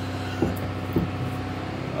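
Steady low mechanical hum of running machinery, with two light knocks about half a second and a second in.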